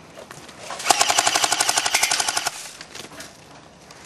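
Airsoft rifle firing one rapid full-auto burst of about a second and a half, starting about a second in.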